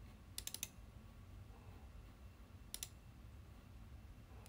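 Computer mouse clicking: a quick run of clicks about half a second in, then a double click near three seconds.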